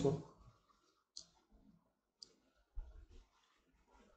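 A plastic water bottle being handled: two faint, sharp clicks about a second apart, then a soft low thump.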